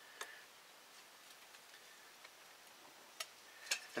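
Faint crackling of a freshly lit wad of shredded tulip poplar bark as it catches, with a few sharp clicks: one just after the start and two near the end.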